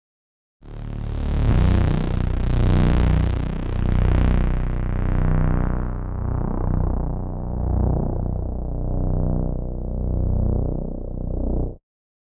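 Deep analog synth bass sampled from a Moog Matriarch, holding one long sustained sound that starts about half a second in. It swells and ebbs slowly about every second and a quarter, its bright top gradually darkening, and it cuts off suddenly near the end.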